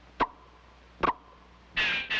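Cartoon sound effects of a tennis racket hitting a ball: two short pocks about a second apart, each trailing a brief ringing tone. Near the end comes a louder, higher ringing hit.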